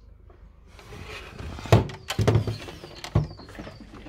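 Handling noise around a portable radio-cassette player: rustling and light knocking, with three sharper knocks in the middle.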